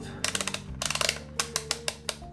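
Aneng M1 multimeter's plastic rotary range selector being turned through its detents: a quick run of clackety clicks, several a second, each click marking a change of range. Background music plays underneath.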